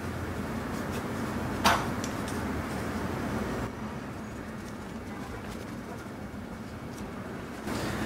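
Cotton shirt fabric being handled and rustled as a collar is turned right side out, over a steady low hum, with one sharp rustle or tap a little under two seconds in.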